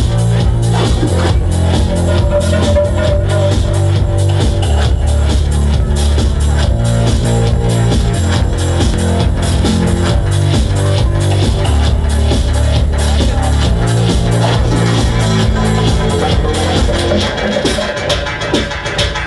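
Loud electronic dance music from a DJ set played over a club sound system, with a steady four-on-the-floor kick drum and a heavy bassline. The music drops back a little near the end.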